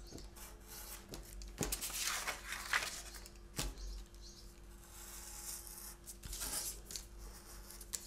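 Thin card being cut with a craft knife and handled on a cutting mat: faint scraping and paper rustling, with a couple of sharp clicks.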